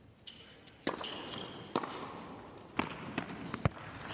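Tennis ball struck by rackets in a rally, four sharp hits about a second apart.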